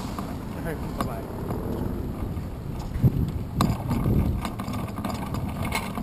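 Wind rush and road noise picked up by a bike-mounted GoPro Hero 2 while riding, with a couple of sharp knocks a few seconds in.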